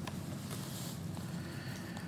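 Soft rustle of thin Bible pages being turned at a lectern, about half a second in, over a low steady room hum.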